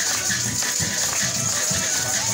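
Venezuelan parranda ensemble playing Christmas folk music: violin and cuatro melody over a steady drum beat, with maracas shaking throughout.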